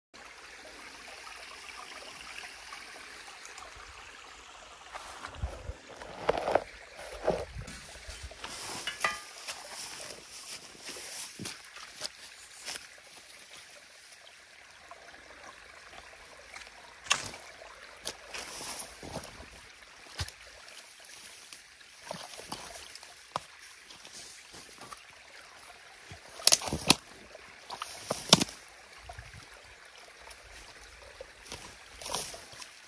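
A potato rake dragged and dug through a waterlogged peat-and-grass beaver dam: irregular scraping, tearing and wet squelching, with a trickle of water. A few louder knocks come near the end.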